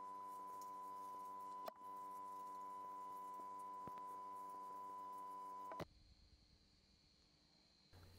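Faint, steady electrical hum with a high whine over it, with a few faint clicks. It cuts off suddenly about six seconds in, and silence follows.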